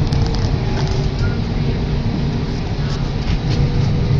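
Steady low rumble of a moving tram, heard from inside the passenger cabin, with a few faint ticks and rattles.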